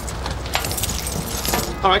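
Keys and watches jingling and clinking as they are dropped into a hat, a few separate metallic clinks.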